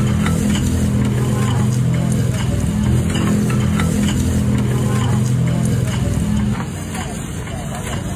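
Steady low hum of a slushy-soda machine, its stainless basin packed with ice and glass soda bottles, with scattered light clicks from the bottles and ice; the hum drops away about six and a half seconds in.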